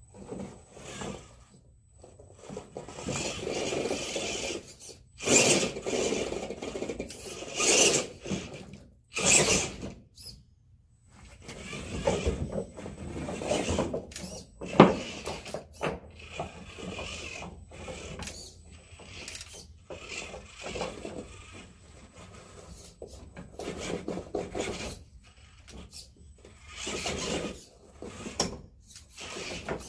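GMade R1 RC rock crawler climbing over rocks and logs: its electric drivetrain running in stop-start bursts of throttle, with tyres and chassis scraping and knocking against stone and wood. One sharp, loud knock comes about halfway through.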